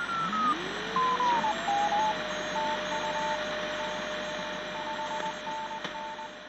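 Radio static: a steady hiss with whistling tones gliding in pitch, one falling and one rising, that settles into a steady whistle. Over it, a higher tone beeps on and off in short and long pulses.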